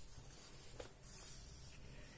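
Faint rustle of a pen moving over a textbook page, with one soft tick a little under a second in.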